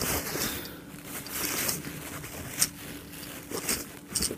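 Paper towel rubbing and crinkling as it wipes spilled baking powder off a toy submarine. An irregular scraping sound with a couple of sharp clicks in the last second and a half.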